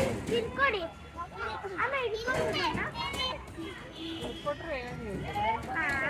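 Children's voices at a playground: several high-pitched voices chattering and calling out, overlapping one another.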